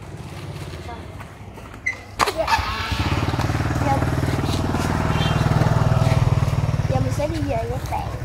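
A motorbike engine running as it passes close by: it grows loud a few seconds in, is loudest in the middle and eases off near the end. A sharp click comes just before it.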